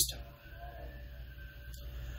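A pause in a man's talk, filled only by a faint, steady, low background hum.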